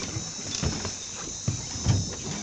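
A steady, high-pitched chorus of night insects, such as crickets or katydids, runs throughout. A few dull bumps and rustles come in the second half.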